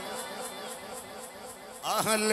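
A brief pause in an amplified sermon: low hall sound with a faint murmur of voices. Near the end a man's amplified voice comes back in, rising in pitch as he starts a chanted phrase.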